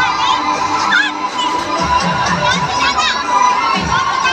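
Many young children shouting and squealing at once as they play, with high voices overlapping in a loud, busy din.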